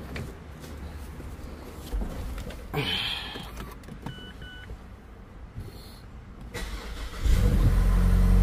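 A car's dashboard chimes twice with short high beeps as the ignition is switched on. About seven seconds in the engine is started and settles into a steady idle, a test start after cleaning the sensors to see whether a check-engine light comes on.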